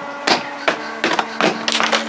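A series of about six sharp metallic taps and clicks, the pliers knocking against a small stainless steel bolt as it is worked down into a hole it won't drop through, over a steady low hum.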